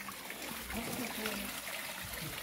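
Faint, steady trickle of water running into a garden fish pond.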